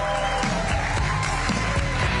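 Music playing over an audience cheering and applauding.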